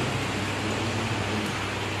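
A steady low hum under an even hiss of room noise.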